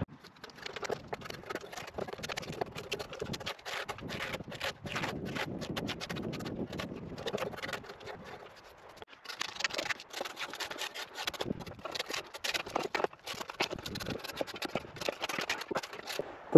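Draw knife being pulled along an ash log, stripping off the bark and shaving the wood in many quick scraping strokes, with a brief lull just past the middle.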